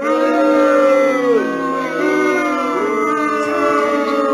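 A voice singing or vocalising wordlessly in long, drawn-out wavering notes with hardly a break.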